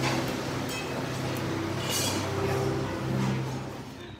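Buffet dining-room bustle with a few short clinks of crockery, over music whose low notes hold and change about once a second.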